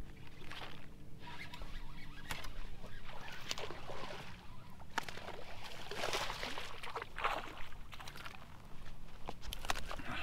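Water splashing in repeated bursts as a hooked largemouth bass thrashes at the surface and is hauled to the boat on heavy flipping tackle, with a few sharp clicks. A low steady hum cuts off about two seconds in.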